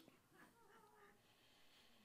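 Near silence: room tone, with a few very faint, brief pitched sounds in the first second.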